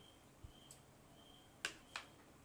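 Two sharp clicks a third of a second apart, about a second and a half in, from metal serving tongs handling food on a metal tray. Beneath them is quiet room tone with a faint high chirp repeating about every half second.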